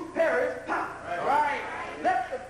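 Speech: a loud, raised voice whose pitch sweeps up and down.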